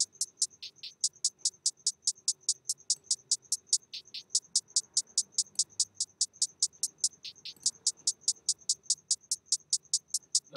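Programmed trap hi-hat pattern played back on its own from Logic Pro X: a fast, even run of crisp hi-hat hits, several a second, with a few quicker rolls.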